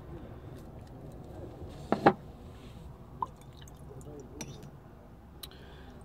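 Small handling noises on a work table, with a sharp double knock about two seconds in, as painting tools are moved and set down.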